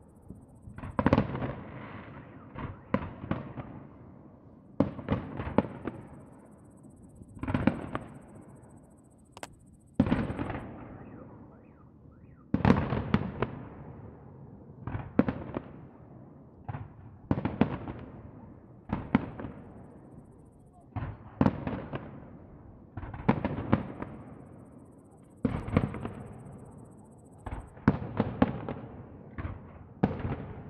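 Aerial firework shells bursting one after another, a bang every one to two seconds, each trailing off in a long echo.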